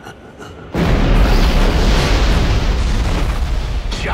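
Film-trailer sound effect: a sudden loud boom about three-quarters of a second in, followed by a sustained heavy rumble, mixed with the orchestral score.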